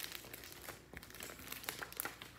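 Rustling and crinkling of a hardcover picture book's pages as it is handled and held open: a run of small crackles, with a few louder ones near the end.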